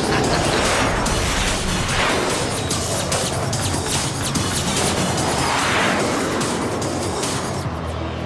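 Cartoon battle soundtrack: continuous music under a dense layer of action sound effects, with many sharp crashes and impacts. Two big rising-and-falling sweeps pass through, one about two seconds in and one near six seconds.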